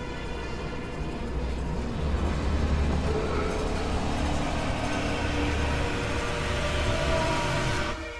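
Eerie horror-film score: a dense, droning swell with faint held tones over a deep rumble that grows stronger about two seconds in and fades out near the end.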